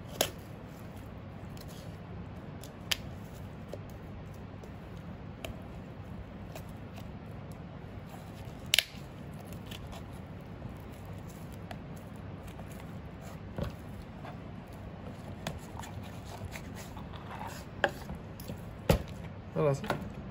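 A thin boning knife cutting meat from a hare saddle on a plastic cutting board: quiet slicing with a few sharp clicks and knocks of the blade against board and bone, the loudest about halfway through, over a steady background noise.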